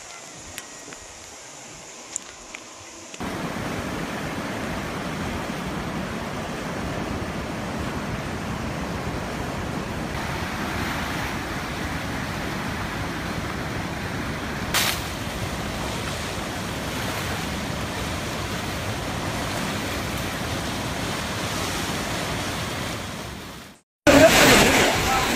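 Fast-flowing floodwater rushing down a street: a loud, steady rush of water, with one brief sharp sound about 15 seconds in. It is preceded for the first three seconds by a fainter steady noise of heavy rain over a flooded road, with a few small clicks.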